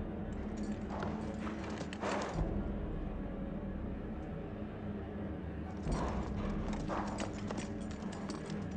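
A horse's hooves clip-clopping in two runs of hoofbeats, one about a second in and one about six seconds in, over a steady low hum.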